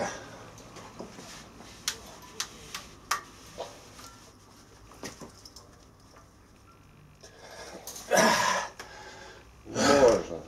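A man breathing out hard with effort while straining to bend a heavy spring-steel power twister, with one long forceful exhale about eight seconds in and a short grunt at the very end. A few light clicks and knocks come in the first few seconds.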